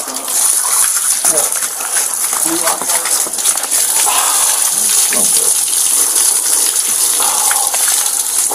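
Water gushing steadily from a garden hose and splashing over a man's face and onto concrete, rinsing out pepper spray.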